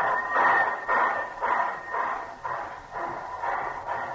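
Steam locomotive sound effect: steady rhythmic chuffs about two a second, growing fainter as the train pulls away.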